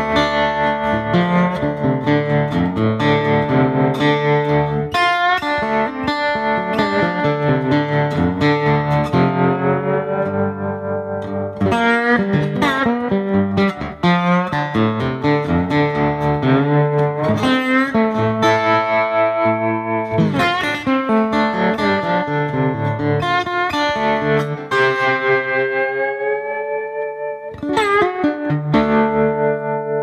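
Beard Road-O-Phonic resonator lap steel played with a slide bar through a Kemper amp, with tremolo and reverb from a Strymon Flint pedal. The notes glide in pitch and the volume pulses steadily, with a strummed chord near the end.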